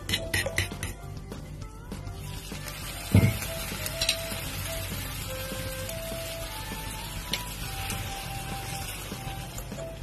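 Fork clinking against a ceramic bowl as eggs are beaten, then a steady sizzle from about two seconds in as eggplant slices fry in a hot pan and beaten egg is poured over them. A single heavy thump about three seconds in, over background music.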